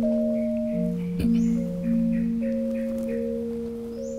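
Javanese gamelan gendèr, metal keys over tube resonators struck with two padded disc mallets, playing a slow melody. Its notes ring on and overlap one another.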